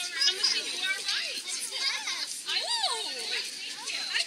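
Several children's voices chattering and calling out over one another, high-pitched and overlapping, with no clear words.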